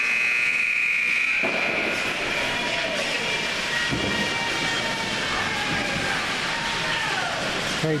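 Ice rink's end-of-period horn sounding a steady high tone that stops about two seconds in, marking the end of the period. After it comes a hubbub of spectators' voices in the arena.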